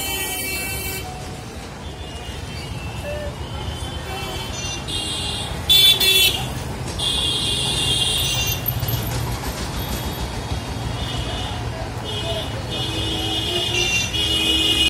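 Busy street traffic: a steady low rumble with voices in the background and repeated high-pitched horn toots, the loudest a short toot about six seconds in.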